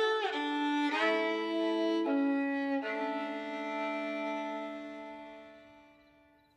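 Solo violin, bowed, playing a slow phrase of a few notes that ends on a long held note, which fades out near the end.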